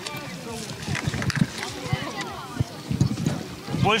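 People talking in the background outdoors by the water, with light water sounds and a few sharp knocks or clicks.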